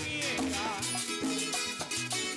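Puerto Rican jíbaro music from a live band: an instrumental passage, a melody line over a moving bass line with percussion.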